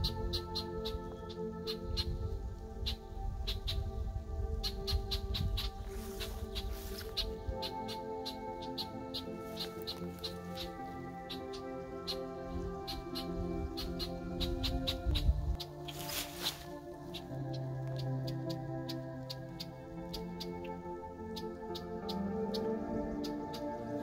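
Soft background music with sustained notes that change slowly. A low rumble runs under it for much of the time, with many faint short clicks scattered through.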